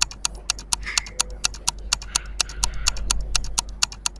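Clock-tick sound effect for a quiz countdown timer: rapid, even ticks, about five a second.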